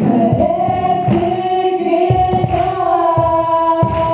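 Live song: a female lead voice and backing singers holding long notes in harmony, over acoustic guitar and beats on a cajón.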